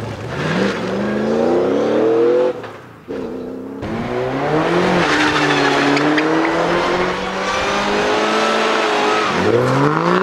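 Race car engines revving hard while the cars spin donuts on tarmac, with tyres squealing. For the first two and a half seconds a rising engine note comes from the Camaro-bodied touring car, then it cuts off sharply. About a second later an open-cockpit Peugeot racer's engine is held at high revs over steady tyre squeal, climbing again near the end.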